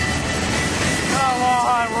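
A train passing close by at speed: a steady rush of wheel and rail noise. A voice calls out over it in the second half.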